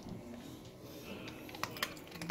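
Dry dog kibble clicking and rattling as it is handled in a metal bowl and chewed, with two sharper clicks near the end.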